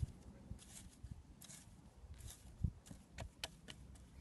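Faint handling noises: hands working wet clay on the ground, with soft scraping and a scatter of light clicks that come more often in the second half.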